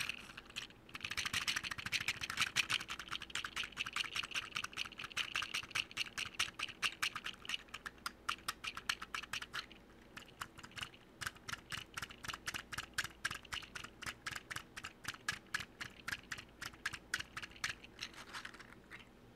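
Rapid light tapping close to the microphone, about six taps a second, in two runs with a short pause around ten seconds in.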